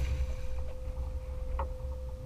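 A thrown cast net landing on the water, its ring of lead weights hitting the surface in a brief spread of splashing at the start, with wind buffeting the microphone throughout over a steady faint hum. A short knock comes about one and a half seconds in.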